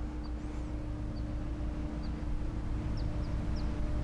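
Outdoor background: a steady low mechanical hum, with a few faint, short, high chirps of small birds scattered through it.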